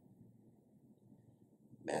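Near silence: quiet room tone in a pause, with a man's voice starting to speak near the end.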